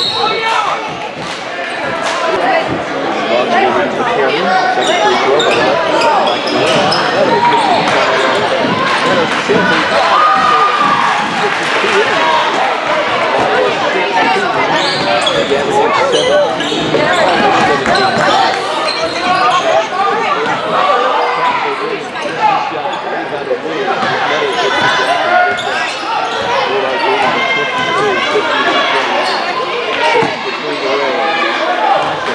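A basketball being dribbled and bouncing on a hardwood gym floor during game play, with many voices echoing in the large gymnasium.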